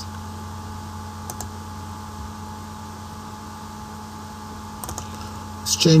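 A few faint computer mouse clicks over a steady low electrical hum, one about a second and a half in and a couple near the end.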